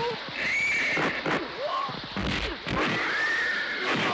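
Horses whinnying: two long calls, one about half a second in and one about three seconds in. Several sharp thuds and voices can be heard among them.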